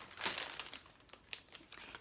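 Clear plastic bag holding Lego bricks crinkling as it is handled, loudest in the first half second, then fainter rustling with a few sharp clicks.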